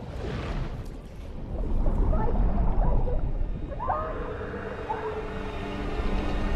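Underwater film soundtrack: a deep rumble that swells about two seconds in, with short wavering pitched calls over it and steady held tones from about four seconds.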